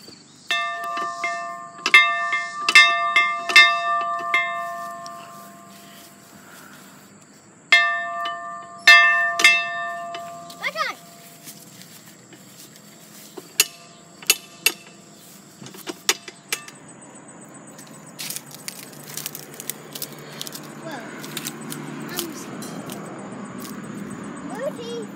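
A large metal bell on a wooden post, rung by pulling its rope: about five clanging strikes with long ringing, a pause of a few seconds, then three more strikes. Scattered clicks and knocks follow.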